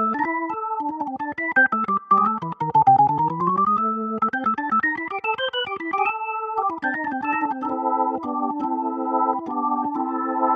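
Nord Stage 4 stage keyboard playing an organ sound: quick runs of notes, a smooth pitch glide down and back up about three seconds in, then repeated chords in the second half.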